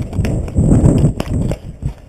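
Quick running footsteps with the wearer's body jolting the camera, under heavy wind rumble on the microphone, with a few sharp clicks in between.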